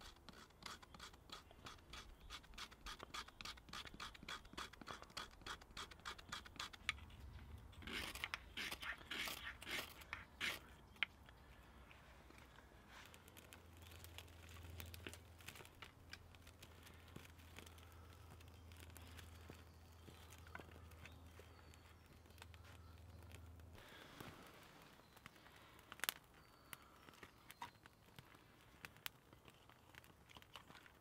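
A tool scraping birch bark into tinder: a fast series of short scrapes for several seconds, then a louder run of scrapes about eight to ten seconds in. After that only faint scattered clicks and snaps as twigs are laid on a small fire.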